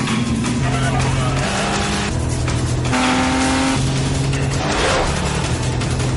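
A car speeding in a chase, engine and tyre noise, under dramatic film score music with a low bass line stepping from note to note.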